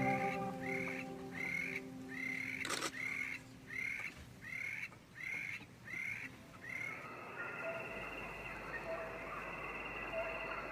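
A bird calling over and over: about ten short calls in an even rhythm, roughly one and a half a second, that stop about seven seconds in, followed by a steady high-pitched natural hum.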